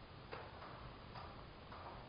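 Quiet room tone with three faint, scattered clicks.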